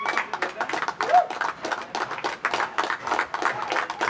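A small group of people clapping their hands, many quick claps overlapping throughout.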